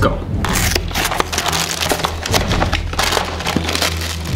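Plastic cereal-box liner bag crinkling and tearing as it is pulled open by hand, a dense crackle of many small ticks starting about half a second in.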